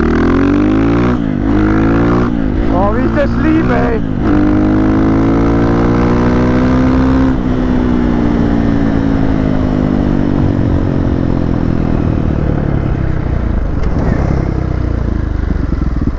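Husqvarna FE 501's single-cylinder four-stroke engine, heard on board through an FMF full exhaust. It is pulled up through the gears, climbing and dropping in pitch a few times in the first four seconds. It holds at speed for about three seconds, then the throttle closes and the note falls slowly as the bike slows.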